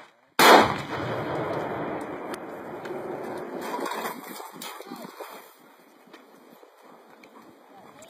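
A single loud explosion about half a second in, an explosive breaching charge set off on a shoot-house door. Its noise dies away gradually over the next four to five seconds.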